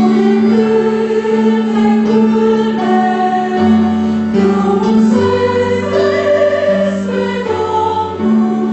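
Mixed choir of men and women singing a hymn in held chords, accompanied by an electronic keyboard. A low bass part comes in a little before halfway.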